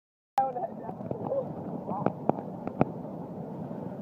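Phone-recorded outdoor sound that starts abruptly about a third of a second in: a steady rushing noise, with a short vocal exclamation at the onset, a few brief voice fragments and several sharp clicks about two to three seconds in.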